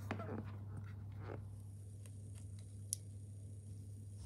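Faint plastic clicks and handling noises from a drone battery and its USB charger being fitted together, with one sharp tick about three seconds in, over a steady low hum.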